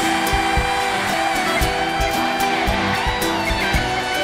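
Electric guitar solo played live on a Fernandes electric guitar, over backing music with a steady drum beat.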